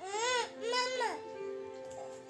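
Two short whining cries in a child's high voice, one right after the other, each rising then falling in pitch, over steady background music.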